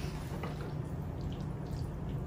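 Spoon mixing mayonnaise-dressed potato salad in a bowl: faint wet squishing with a few light taps.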